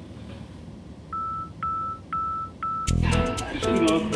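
Four short electronic beeps on one pitch, evenly spaced about half a second apart, followed about three seconds in by music with a steady beat.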